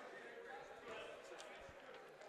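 Faint gym ambience with distant murmuring voices, and a basketball bouncing once on the hardwood floor as the free-throw shooter dribbles, near the end.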